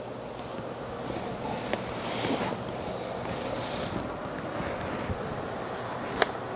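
Cotton bed sheet and blanket rustling as they are pulled down and gathered by hand, swelling louder a couple of seconds in.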